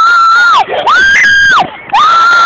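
A girl screaming in playful fright: two long, high-pitched screams in a row, each held steady and then dropping away.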